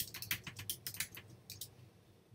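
Typing on a computer keyboard: a quick run of about a dozen keystrokes, a short phrase typed out, stopping a little before the end.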